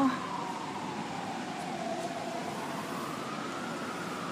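Emergency vehicle siren wailing, its pitch sliding slowly down and then back up in one long cycle, over steady outdoor background noise.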